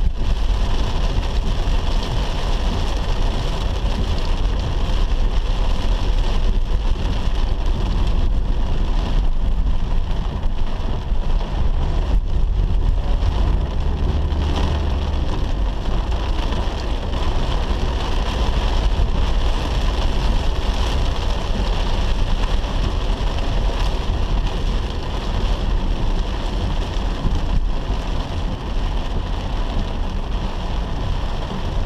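Car driving through heavy rain, heard from inside the cabin: rain on the roof and windscreen and the tyres on the flooded road, over a steady low road rumble.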